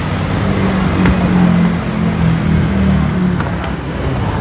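A motor vehicle's engine running with a steady low hum.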